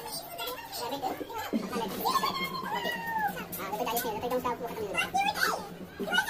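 Background chatter of people and children's voices, with no words standing out. A steady low hum comes in about a second and a half in and runs under the voices.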